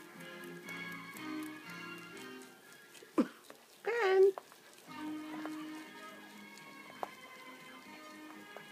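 Rabbit chewing parsley with faint crunching clicks, under background music from a television soundtrack. About three to four seconds in, a short, loud, wavering voice-like cry comes from the same soundtrack.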